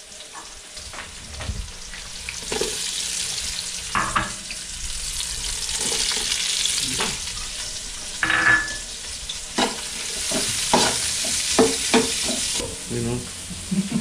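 Ginger and other aromatics sautéing in hot cooking oil in a pan, sizzling more strongly from about two seconds in. A metal spatula stirs and knocks against the pan a number of times.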